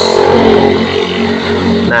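A motor engine running steadily at an even pitch for almost two seconds.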